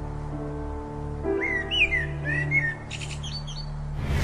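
Background music of held chords over a low bass, with a string of short bird chirps over it from about a second in, lasting about two seconds.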